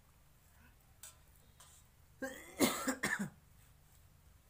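A brief vocal sound from a person in three quick pulses, a little over two seconds in, with a faint click about a second in.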